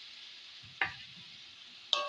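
Wooden spatula stirring small fish and masala in a wok over a faint sizzle of frying. The spatula knocks against the pan twice, once a little before the middle and once near the end, each knock with a short metallic ring.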